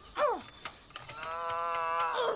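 A woman's wordless vocalizing: a short falling cry, then a long held note that drops in pitch at the end.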